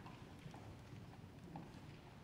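Near-silent concert hall room tone with a few faint footsteps on the wooden stage floor.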